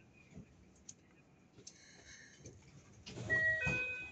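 Faint running noise inside a Keikyu 600 series train cabin as it comes into a station. About three seconds in, a louder electronic chime of a few steady tones follows one after another.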